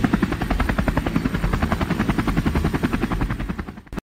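Helicopter rotor sound effect: a fast, even chopping that runs steadily, then fades out near the end.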